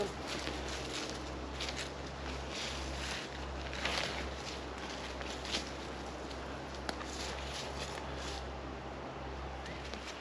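Footsteps and scattered rustles in dry leaf litter as a person moves about, with a few short crackles, over a steady low rumble.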